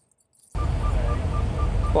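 Semi truck's diesel engine running close by as the truck is moved forward a little, starting abruptly about half a second in. A rapid high beeping, about four beeps a second, runs over it.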